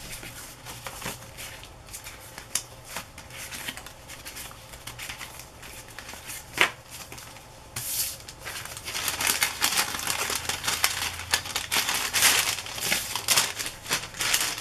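Paper and card craft pieces rustling and sliding as they are handled and gathered up, with one sharp tap about halfway through. The rustling grows louder and busier over the last several seconds, while a kraft paper envelope is moved.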